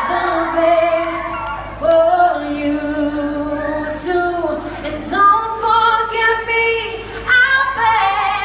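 A female singer singing live through a PA in a large hall, holding long, slow notes, accompanied by her own acoustic guitar.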